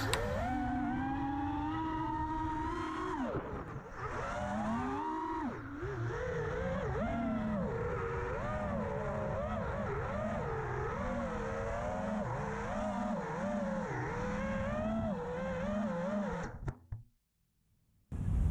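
Impulse RC Alien 6S FPV quadcopter's brushless motors whining, the pitch rising and falling constantly with the throttle. The motors cut out about 16 to 17 seconds in, as the quad comes down in the grass.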